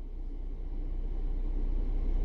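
Low, steady vehicle rumble heard from inside a car's cabin, slowly growing louder over the two seconds.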